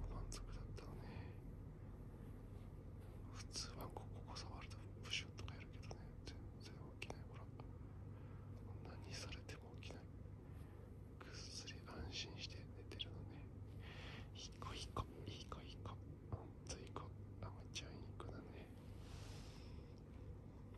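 A person whispering softly, with many short hissy, clicky sounds scattered irregularly over a low steady hum.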